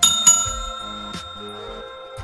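A bright bell chime sound effect for a notification-bell click: struck at the start, struck again a moment later, then ringing on and slowly fading over steady background music.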